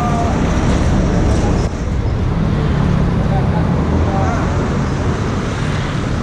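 Steady low street-traffic rumble with scattered voices of a gathered crowd talking in the background.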